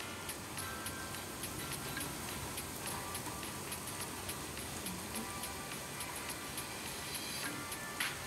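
Soft background music with a fast run of light high ticks, a few a second, over a steady hiss of heavy rain.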